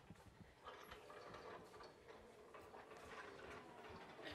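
Near silence with faint, scattered knocks and clicks from a tall metal-framed rack on castors being wheeled across the floor.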